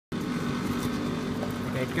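Food X-ray inspection machine running with a steady hum, a held low tone under it.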